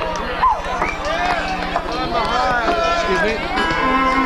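Indistinct voices and shouts of a festival crowd between songs at a live rock show, over a steady low electrical hum from the PA. Near the end a held electric-guitar note comes in as the band starts the next song.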